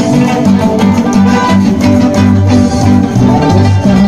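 Live Andean band music played loud, led by a plucked guitar over a steady beat and a strong bass line.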